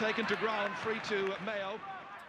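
A match commentator's voice speaking over the steady background noise of a Gaelic football broadcast, fading near the end.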